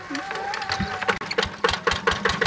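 Single-cylinder diesel engine of a two-wheel hand tractor being started: irregular thuds begin about a second in and quicken into a steady beat of about eight a second as it catches.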